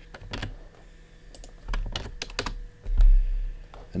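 Typing on a computer keyboard: irregular keystrokes, with a heavier thud among them about three seconds in.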